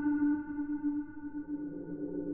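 A single held synthesizer note with bright overtones, fading slowly in an electronic track.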